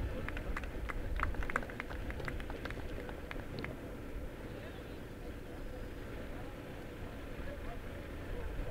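A few people clapping by hand, a scattered patter of claps that thins out and stops about three and a half seconds in, leaving a low steady outdoor background.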